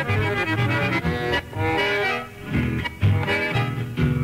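A chamamé played by an accordion-led ensemble, with a steady bass pulse under the melody.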